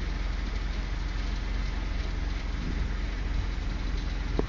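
A vehicle engine running steadily, a low rumble with fast even pulsing under a broad hiss of road or wind noise.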